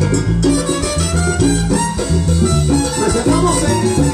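Live salsa band playing an instrumental passage, with a repeating bass line and congas and timbales keeping a steady dance rhythm.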